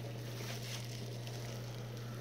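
A steady low hum over faint background hiss, with no distinct handling sounds: room tone.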